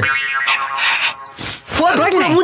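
A comic sound effect on a film soundtrack: a pitched twang held for about a second, followed by two short sharp hits.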